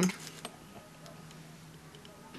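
Quiet room tone with a faint steady low hum and a few faint light ticks.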